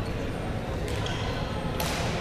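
Large sports-hall ambience: a steady low hum with faint background voices, broken by two sharp smacks, one about a second in and a louder one near the end.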